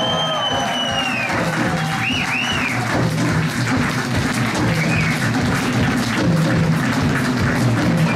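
Live rock drum kit playing under audience applause, with a few whistles from the crowd early on and low bass notes held underneath.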